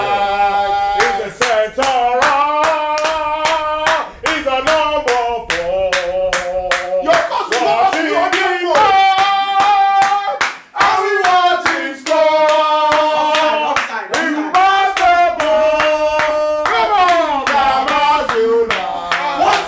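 A group of men singing a football chant together, holding long notes over a steady beat of hand claps.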